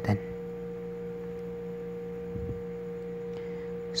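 Steady electrical hum of a few constant tones over faint hiss.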